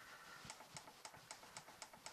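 Faint, evenly spaced clicks, about four a second, from the push buttons of a Victron BMV-700 battery monitor as its + button steps the battery-capacity setting upward.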